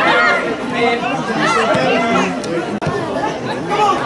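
Many people talking and calling out over one another, no single voice standing out: spectator and touchline chatter at a football match.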